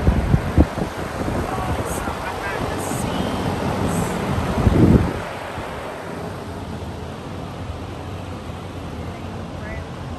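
Large DeWalt drum fan running, its air blast buffeting the microphone with heavy rumbling gusts for about the first five seconds, loudest at the very start and again around five seconds in. After that the buffeting stops and a quieter steady hiss of fan and outdoor air remains.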